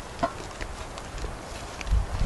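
Footsteps on dry, leaf- and stick-strewn ground as people walk, with scattered light knocks and a low thump near the end.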